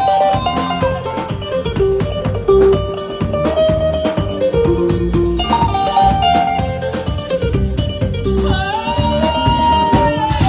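Live band music: guitars and keyboard playing a melody over a drum beat.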